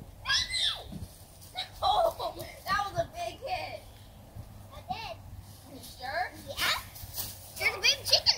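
Children's high voices calling out and exclaiming in short stretches, with no clear words, loudest near the end.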